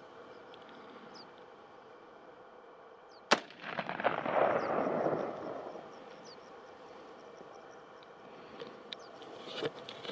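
A single shot from an AR-15-style rifle about three seconds in, followed by about two seconds of rushing noise that dies away.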